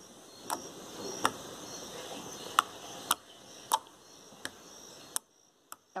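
White homemade glue slime clicking as fingers poke into it: about eight short, sharp clicks, roughly one every half second to second.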